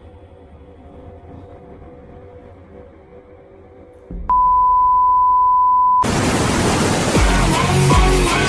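Quiet background music, then a single steady beep, a loud unbroken censor-style bleep tone held for nearly two seconds, which cuts off into loud electronic music with a heavy bass beat.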